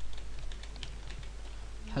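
Typing on a computer keyboard: a run of light, irregular key clicks over a low, steady hum.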